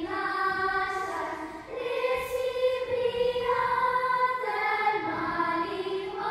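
A children's folklore group singing a folk song together, in long held notes that change pitch every second or so.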